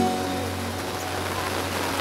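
Rain hissing steadily over the soft instrumental backing of a slow ballad from outdoor stage speakers, with no singing over it.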